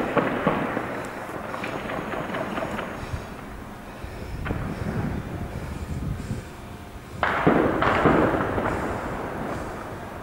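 Gunfire and explosions of a street battle: scattered shots over a continuous rumble, with a sudden loud blast about seven seconds in that dies away over a second or so.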